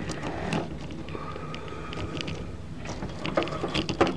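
Faint handling noise inside a steel desktop computer case, with a few small clicks and knocks near the end as fingers reach for the front panel's plastic tab.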